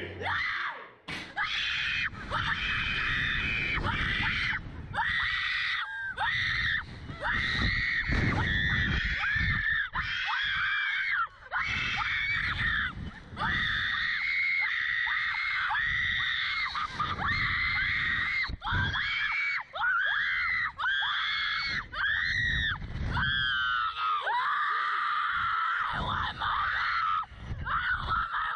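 Two girls screaming over and over on a Slingshot reverse-bungee ride, long high screams broken every second or so, with wind rushing over the ride-mounted microphone.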